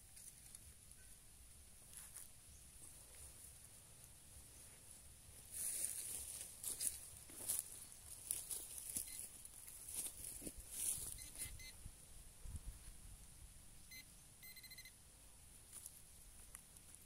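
Faint rustling and scratching in loose dirt over a steady high hiss, then a short run of electronic detector beeps about two seconds before the end.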